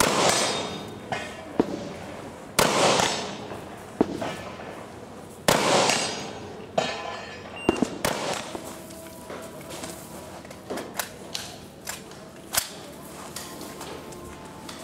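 Rifle shots on an open range: three loud reports about two and a half to three seconds apart, each trailing off in a long echo, with shorter, quieter cracks between them and a scatter of fainter cracks in the second half.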